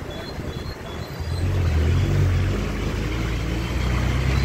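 Engine of a small Tata Ace mini-truck running close by, a low rumble that grows louder about a second in as it draws near.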